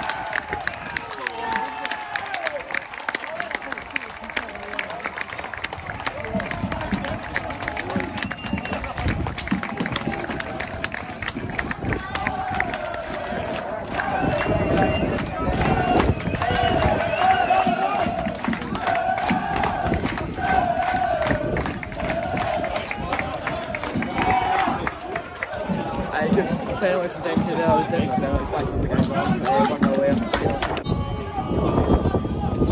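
Football crowd noise from supporters after a goal, turning into a chant sung together by many voices from about twelve seconds in, in short repeated phrases.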